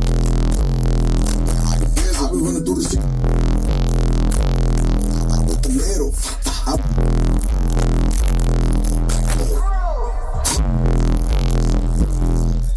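Bass-heavy electronic music played loud through a car audio system's stacked subwoofers, with a strong low bass line under a repeating beat.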